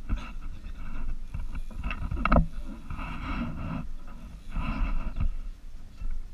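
Noises of a small aluminium fishing boat on the water: a few knocks and thuds on the hull, the loudest about two and a half seconds in, and two short rushes of noise around the middle and near the end.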